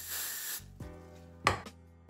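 Aerosol can of Got2b Glued freeze spray hissing in one short burst onto the hair, stopping about half a second in, over background music.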